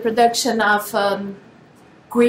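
A woman speaking for about a second and a half, then a short pause.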